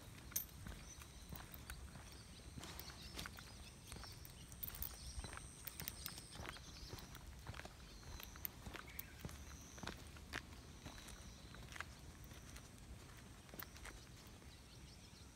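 Faint footsteps of a person and an Irish Setter puppy walking on a paved path, with irregular light clicks and taps.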